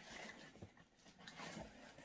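Near silence, with faint rustling of paper and cardboard as a manila folder taped over a shipping box is lifted and handled.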